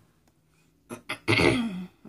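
A woman clearing her throat about a second in: a short, rough vocal sound that drops in pitch.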